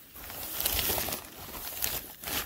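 Synthetic fabric of a hammock sock rustling and crinkling as it is grabbed and handled, with a few sharper crackles.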